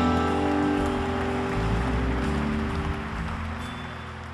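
Live folk-rock band music: a guitar chord is struck just before and rings on with sustained bass notes, slowly dying away.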